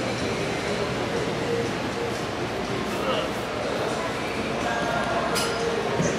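Indistinct background chatter of shoppers in a large store, steady throughout, with a short sharp click near the end.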